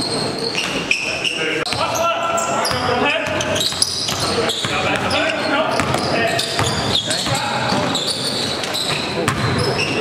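Live sound of an indoor basketball game: a basketball bouncing on the gym floor, with many short high squeaks and players' voices in a large hall.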